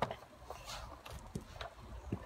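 A few scattered light knocks and clicks, the sharpest right at the start, over a faint low rumble.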